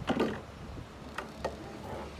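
Clicks and knocks of a boat's handheld freshwater sprayer being pulled out of its deck fitting on its hose: a louder knock at the start, then two sharp clicks close together later on.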